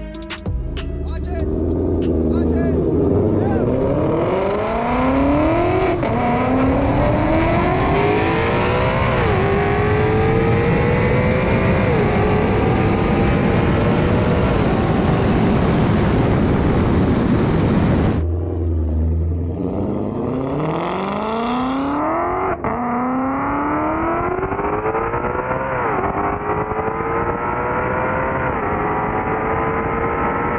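Ford Shelby GT500's supercharged V8 at full throttle down a drag strip, its pitch climbing and dropping back at each upshift as it accelerates through the gears. The sound cuts off suddenly about 18 seconds in and a second run of rising, shifting engine sound follows.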